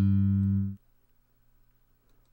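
One sampled electric bass note, a G played on the A string, triggered from a software sampler: it starts sharply and stops abruptly after under a second.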